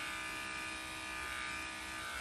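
Corded electric pet clipper running steadily with an even, high buzz as it skims the whiskers on a senior Shih Tzu's face.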